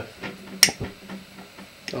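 A pocket lighter struck once with a sharp click about half a second in, then a fainter tick, held under the mouth of an inverted metal camping cup to ignite gas bled from a radiator in a hydrogen pop test; no loud pop is heard.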